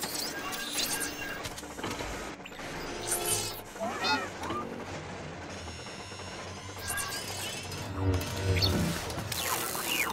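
An astromech droid beeping and whistling in short chirping glides over a film score, with clattering impacts.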